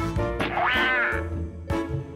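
Background music with steady tones, and a short pitched call that rises and then falls about half a second in.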